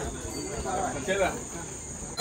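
A steady, high-pitched trill of crickets, with faint murmuring voices of a few people.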